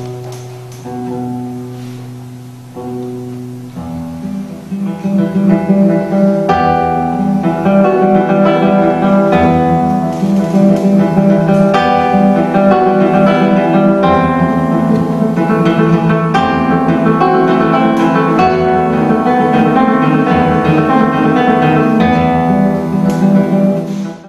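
Solo nylon-string classical guitar: a few slow, ringing notes, then from about four seconds in a fast, dense run of plucked notes that carries on until it stops abruptly at the end.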